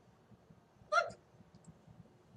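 A single short throat or breath sound from the man speaking, about a second in, in a pause between his sentences.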